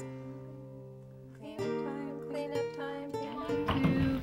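Background music of acoustic guitar chords played softly, with a new chord coming in about every second after a quieter opening.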